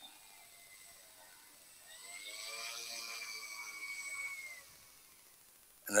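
Twin electric motors of a large RC F7F Tigercat model warbird spooling up to a steady whine for about three seconds as it taxis on grass, then winding down.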